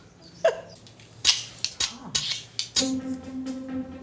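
Flint and steel from a tinderbox struck again and again: a series of sharp, irregular clicks and scrapes. Background music comes in under them with a held note near the end.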